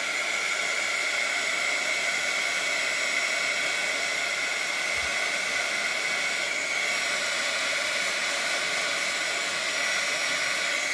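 Handheld craft heat tool running continuously, blowing hot air to dry wet watercolour paper: a steady rush of air with a high fan whine.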